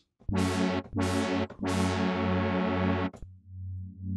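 Arturia Pigments software synthesizer playing notes through a 24 dB low-pass filter whose cutoff is swept by an envelope. Three short notes each start bright and quickly close down to a duller tone over a held bass. A longer note then fades to a dark, low hum near the end.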